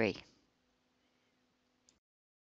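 The tail of a narrator's word, then near silence: faint room noise with a low hum, and a single faint click near the end.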